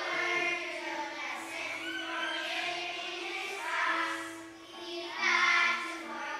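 A group of young children singing a song together in unison, held notes changing every half second or so, with lower accompanying notes underneath.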